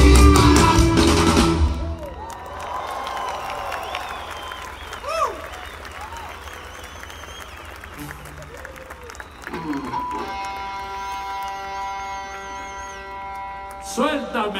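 A live rock band finishes a song loudly about two seconds in, then the crowd applauds and cheers. About ten seconds in, a held chord of steady notes sounds from the stage over the crowd.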